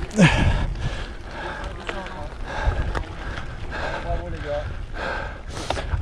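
A cyclist breathing hard and heavily in repeated gasps while climbing a steep gravel track at race effort, exhausted and with a side stitch, over the low rumble of bike tyres on loose gravel.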